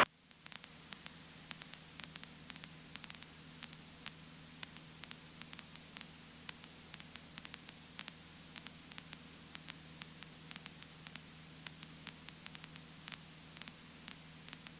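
Faint electrical static: a steady hiss with a low hum under it, and many small crackling clicks scattered throughout.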